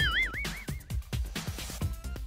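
Electronic background music with a steady beat, opened by a warbling, wobbling comic sound effect that dies away within the first second.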